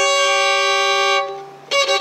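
Violin bowing a sustained double stop, the augmented fourth (tritone) of G with the C-sharp above, held for about a second and a half and then fading. A new bow stroke starts near the end.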